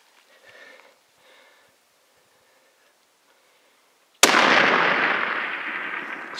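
A single hunting-rifle shot fired at a bull elk about four seconds in: one sharp, very loud report that fades slowly over the next two seconds.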